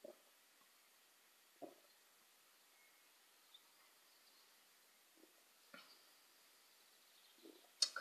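Near silence with a few faint gulps as a man drinks beer from a pint glass, spaced a second or more apart, and a faint click just before the end.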